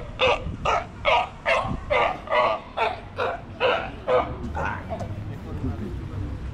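Galápagos sea lion barking over and over, about two or three short calls a second, growing weaker after about four seconds.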